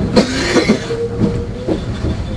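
Meitetsu Panorama Car electric train running, its wheels knocking over rail joints in an irregular clatter over a low rumble, with a brief steady whine near the middle.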